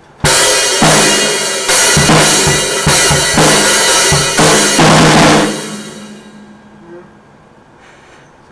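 Acoustic drum kit played hard: repeated cymbal crashes with snare and bass drum hits for about five seconds, then the cymbals ring out and fade away.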